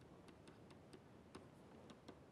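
Faint, irregular ticks of a stylus tapping on a pen tablet while handwriting, over near-silent room tone, with one slightly louder tick near the middle.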